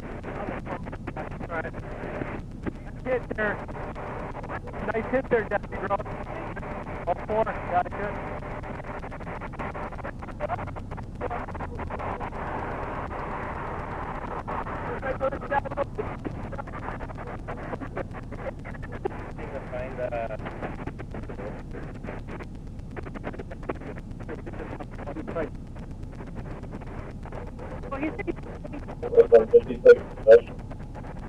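Indistinct, muffled voices coming and going over a steady background hum, with a short spell of clearer speech ("go ahead") near the end.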